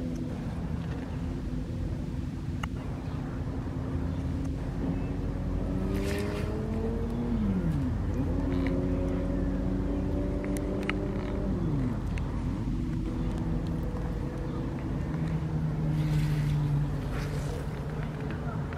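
A motor engine running steadily, its drone gliding slowly in pitch, with two sharp dips and recoveries in pitch near the middle as the throttle eases off and picks up again.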